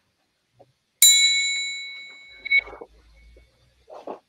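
Metal triangle struck once about a second in, ringing with a bright, high, bell-like tone that fades away over about a second and a half.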